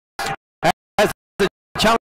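A voice chopped into short fragments by audio dropouts: five brief snippets of speech, each cut off into dead silence, giving a stuttering, glitchy sound. It is most likely the race commentary with its audio breaking up.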